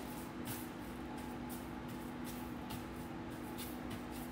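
Soft, irregular scratchy rustles of breadcrumbs on baking paper as an egg-coated piece of raw chicken is pressed and turned in them by hand, over a steady low electrical hum.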